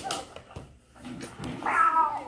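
A boy's short, high-pitched cry that falls in pitch about a second and a half in, during close-quarters stage-combat grappling. A sharp click comes at the very start.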